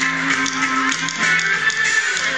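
Live rock band playing with electric guitar, with steady pitched notes and frequent sharp strikes, heard from within the audience.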